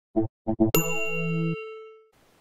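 Audio logo sting: three short quick notes, then a bright bell-like ding that rings on and fades away.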